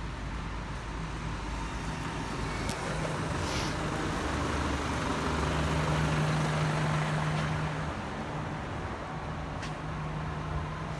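A truck drives past on a city street. Its low engine rumble swells to its loudest about six seconds in, then eases off, over steady traffic noise. There is a brief hiss a few seconds in.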